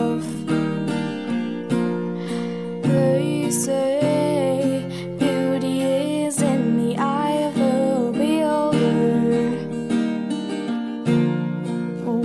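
Acoustic guitar strummed in a steady rhythm, with a woman singing a slow melody over it.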